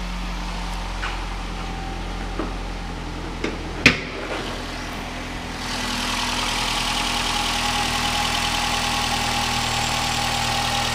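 2014 Nissan Rogue's 2.5-litre four-cylinder engine idling steadily at a raised cold-start idle. A single sharp click comes just before the middle as the hood is opened. From about six seconds in, with the hood up, the engine is louder and brighter with a steady whir.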